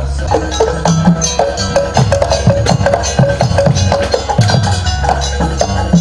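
Traditional Banyuwangi dance music: drums and struck percussion playing a quick, busy rhythm over pitched notes.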